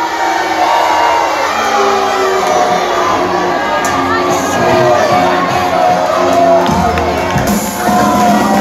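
Music over the venue's speakers mixed with a cheering, shouting crowd.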